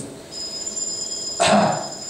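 A steady high-pitched electronic tone, two high pitches held together without change, sets in just after the start and carries on. About one and a half seconds in, a short loud breathy hiss cuts across it.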